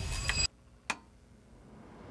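A sharp click of the desktop PC's power button about a second in, after the background music cuts off abruptly. Then a faint hiss of the computer's fans starting up, growing slowly louder.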